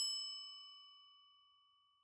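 A single electronic bell-like chime, struck once and ringing out, fading away over about a second and a half. It is the cue tone between the instruction and the replay of the passage.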